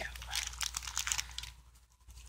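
Small plastic packets of nail-art spangles crinkling as they are picked up and handled, a dense run of crackles that dies down after about a second and a half.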